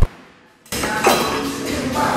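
Electronic music ends with a falling tail that fades away. About two-thirds of a second in, live gym sound cuts in abruptly with a thump and clinks, typical of a cable machine's weight stack.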